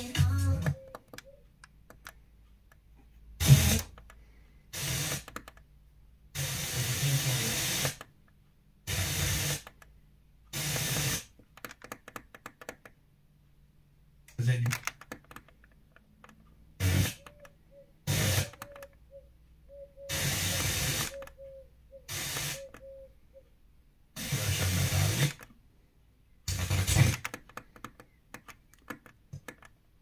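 Yamaha AV receiver's FM tuner being stepped down the band: about a dozen short bursts of static hiss and snatches of weak stations, each lasting about a second or two, broken by quiet muted gaps.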